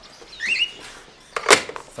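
A cage bird gives a short chirp, then a single sharp clack about one and a half seconds in as a desk telephone's handset is put down on its cradle.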